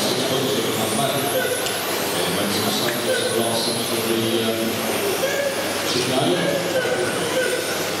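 Electric radio-controlled touring cars with 13.5-turn brushless motors racing round a carpet track: the motors' whine comes and goes in short high notes as cars pass, over a steady wash of tyre and hall noise, with indistinct voices in the echoing hall.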